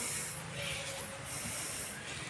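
Rustling, hissing noise of people walking through tall grass on a narrow footpath, rising and falling as the grass brushes past.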